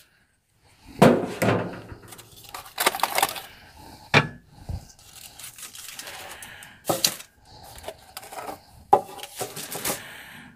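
Metal loaf tins and aluminium foil being handled: a series of sharp clanks and knocks as a clamp and the top tin come off the mould, with foil crinkling and rustling between them.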